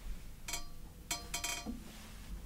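Acoustic guitars being handled on wall hangers as one is hung up and the other reached for: a few light knocks and clinks, some with a short faint ring, between about half a second and a second and a half in.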